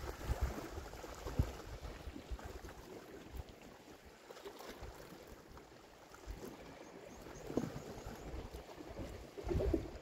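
Wind rumbling on the microphone over the sea washing against the rocks.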